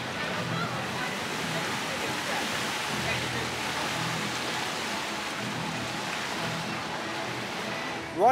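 Steady rush of water flowing down the trough of a Mack Rides log flume as a log boat glides along it.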